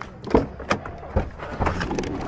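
A van's front door being opened and someone climbing into the cab: a latch click followed by a few knocks and thumps of the door and body against the seat and trim.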